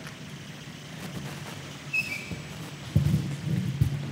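Footsteps and handling noise as a man walks across a stage to a panel table and reaches a chair. There is a short squeak about two seconds in and a few louder thumps about three seconds in and near the end.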